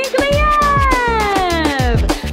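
A long drawn-out cat meow, rising briefly and then falling slowly in pitch, over a birthday song's backing music with a steady low drumbeat.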